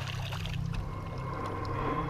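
Light splashing of river water as a hand scoops it over the side of an aluminium fishing boat, over a steady low drone.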